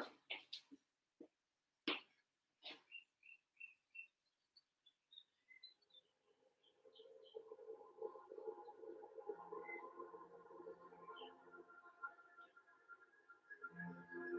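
Near silence with a few faint knocks and a short run of faint high chirps, then faint background music comes in about halfway through.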